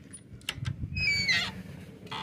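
A few clicks of the gate's lock, then the wooden gate's hinges squeal as it swings open, a high squeak that falls in pitch over about half a second.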